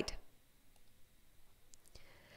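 Faint clicks on a computer, a few close together near the end, as the presentation slide is advanced.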